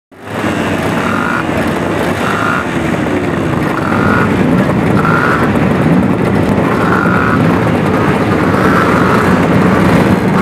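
Several vintage racing motorcycle engines running and being blipped together, fading in at the start and then holding a steady, loud level.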